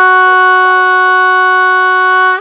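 One loud, steady horn blast held at a single pitch, starting and stopping abruptly.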